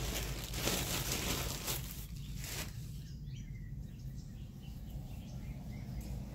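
Soft rustling from handling in the first two and a half seconds, then quieter, over a steady low hum.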